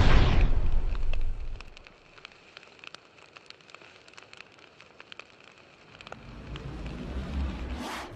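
Fire sound effect: a loud rush of roaring-flame noise fades out over the first second and a half. Faint crackling follows, then a low rumble that swells near the end.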